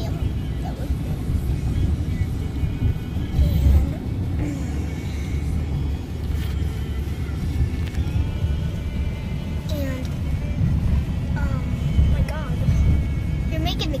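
Car cabin noise from a moving car: a steady low road-and-engine rumble, with music and faint voices playing quietly over it.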